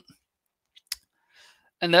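A single sharp click about a second in, made at the computer while the screen is switched from the browser to the code editor.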